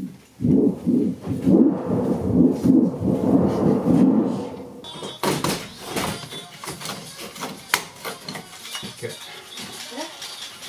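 A person's voice for the first four seconds or so, then a run of light knocks and clicks from handling work, with one sharper click in the middle of them.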